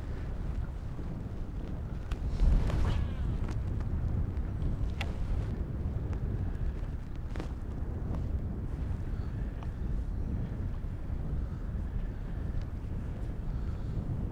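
Wind buffeting the microphone over choppy open water: a steady low rumble that swells briefly about two and a half seconds in, with a few faint clicks.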